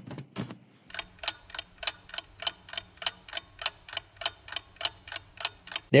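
Clock-ticking sound effect: a steady, evenly spaced tick about four times a second, standing for the wait while a native-image build runs.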